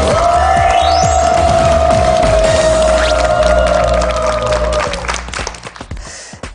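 Game-show correct-answer jingle: one long held note over a steady bass, with a quick rising sweep near the start, fading out about five seconds in.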